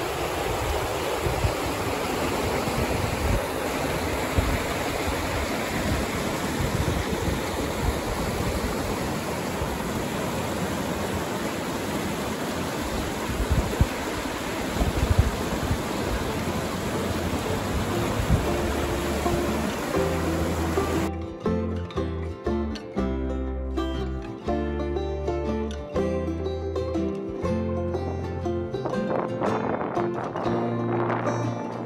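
A fast mountain river rushing over rocks: a steady, loud rush of water. Background music with a bass line fades in under it, and about two-thirds of the way through the water sound cuts off, leaving only the music.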